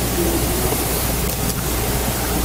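Steady, even hiss with a low hum underneath: room and sound-system noise in the sanctuary, with no voice over it.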